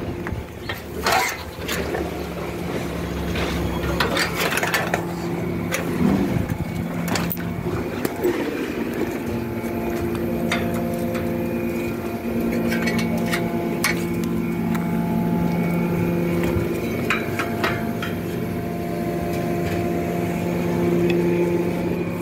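A steady motor or engine hum, with scattered clicks and knocks over it.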